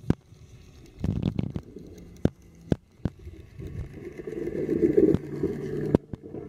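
Hayward TigerShark robotic pool cleaner running underwater: a steady low motor hum under rumbling water noise that grows to its loudest about five seconds in, with scattered sharp clicks.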